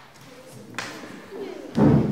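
A heavy thump near the end, after a sharp click about a second in, over faint wavering pitched tones.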